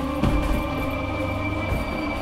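Suspense film score: a sustained droning bed with a high steady tone that comes in just after a thump near the start.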